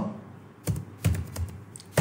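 Computer keyboard being typed: about five separate keystrokes, clicking at an uneven pace.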